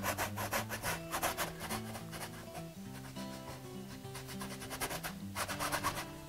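Paintbrush scrubbing against a canvas in quick, short repeated strokes. It pauses for a few seconds in the middle and starts again near the end.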